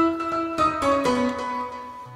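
Sampled grand piano (Native Instruments' The Giant) played from a small keyboard: one loud struck note, then a few notes stepping down, each spread across octaves by a chord trigger and ringing on with delay and reverb.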